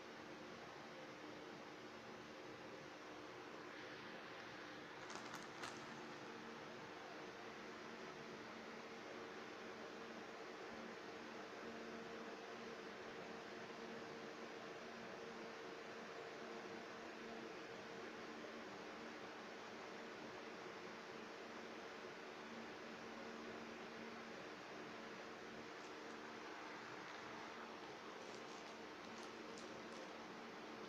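Faint steady room hum, with a couple of soft clicks about five seconds in.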